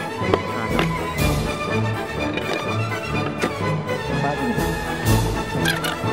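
Background music with a steady, repeating low beat, and a few sharp clicks.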